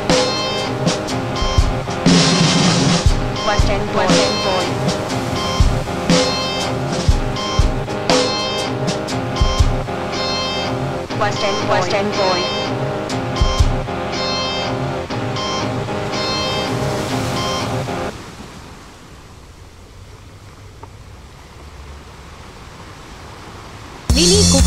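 Live post-punk band playing an instrumental passage with guitar and regular drum hits, recorded from the floor of the venue. About three-quarters of the way in the song stops abruptly, leaving a much quieter hum of the room.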